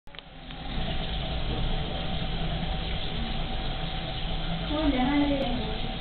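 Steady low hum with a faint constant tone running under it, and a voice starting to speak near the end.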